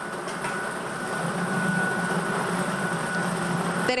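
Lottery ball drawing machine running with a steady whooshing, rumbling noise as a ball is drawn into its clear acrylic catch chamber. The rumble strengthens about a second in.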